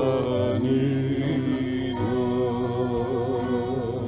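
A woman singing a slow melody in long held notes with a wavering vibrato, changing note about two seconds in, over a low steady drone.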